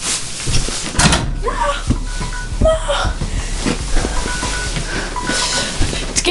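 Several knocks and thumps of a mini basketball against a door-mounted hoop and its door, over short repeated electronic beeps and music, likely from a TV or game.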